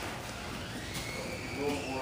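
Low room sound with a faint, brief voice near the end.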